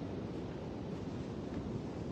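Steady wind buffeting the phone's microphone, mixed with ocean surf washing onto the beach; an even, unbroken noise with no distinct events.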